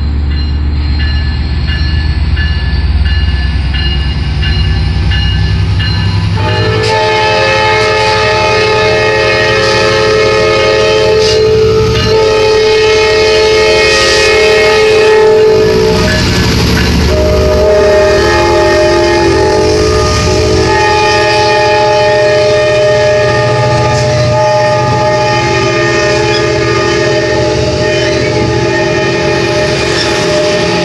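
Amtrak passenger train passing close by: a low diesel rumble, then from about seven seconds in a loud, long multi-tone horn that holds on and steps in pitch several times as the cars roll past.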